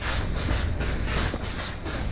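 Milking plant running in a dairy milking shed: a steady low rumble with a fast, regular hissing pulse over it.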